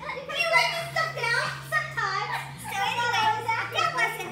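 Several people talking and laughing over one another, with a low held tone underneath that steps in pitch a few times.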